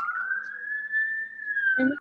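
A siren wailing in the background, its pitch sweeping slowly up and then easing back down.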